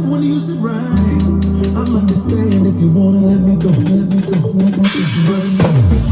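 A drum kit played along to a recorded song with bass guitar and guitar: steady drum and cymbal strokes over a moving bass line, with a bright cymbal wash about five seconds in.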